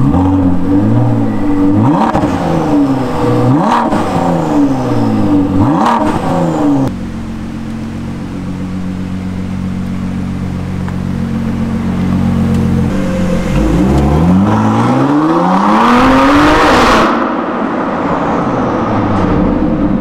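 Ford GT's twin-turbo 3.5-litre EcoBoost V6 being blipped, the revs rising and falling four times about two seconds apart, then settling to a steady idle for about six seconds. Near the end the revs climb in one long rise as the car pulls away.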